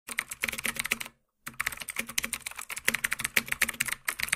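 Computer keyboard typing sound effect: a fast run of key clicks, about eight to ten a second, with one short break about a second in.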